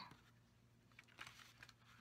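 Near silence: room tone with a faint low hum and a few faint light ticks about a second in.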